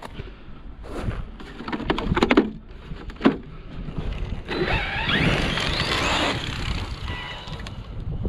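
Loose gravel crunching under footsteps and handling, with a few sharp crunches early on and a longer, louder stretch of scraping gravel about halfway through.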